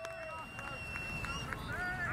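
A single long, steady whistle blast lasting about a second and a half, typical of a rugby referee's whistle awarding a try, with faint players' shouts across the pitch over a low rumble.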